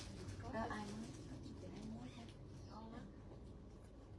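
Faint, scattered speech from a person speaking away from the microphone, a few short phrases over a low steady room hum.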